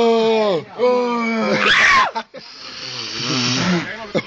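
A voice holding long, drawn-out wordless notes, twice, each ending in a falling slide; then, from about halfway, a steady hiss with a low voice underneath.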